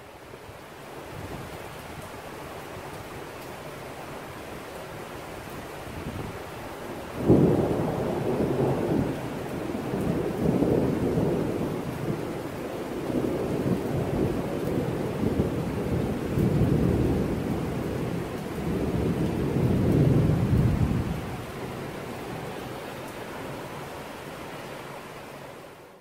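Thunderstorm: steady rain hiss, then a sudden thunderclap about seven seconds in that rolls on in several swells of rumbling for about fourteen seconds before dying back to the rain.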